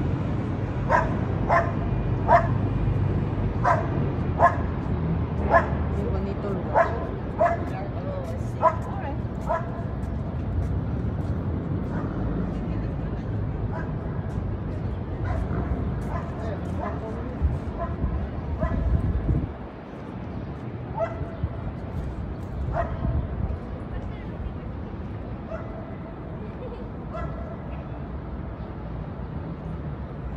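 A dog barking in short, high yaps, about one or two a second for the first ten seconds, then only now and then, over a steady low rumble that drops off about two-thirds of the way through.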